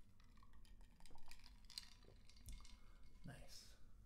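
Near silence: faint clicks and small handling noises after the guitar has stopped, with a man saying "nice" near the end.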